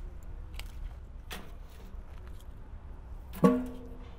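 Split wood chunks placed onto a bed of hot coals in an offset smoker's firebox, giving a few light knocks over a low steady rumble. About three and a half seconds in, a single plucked guitar note rings out, the loudest sound.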